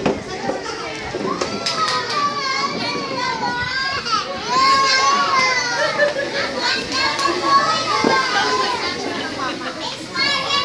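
Many young children's voices talking and calling out at once, a busy overlapping chatter of high voices that never drops out.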